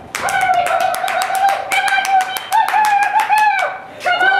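Rapid hand clapping under a long, high-pitched coaxing call, which steps up in pitch partway through. It is a handler urging a harnessed dog to pull a weighted cart.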